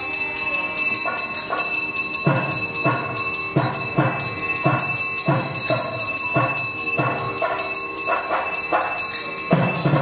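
Temple music during a camphor aarti: a drum beating steadily about one and a half times a second under a continuous high bell ringing.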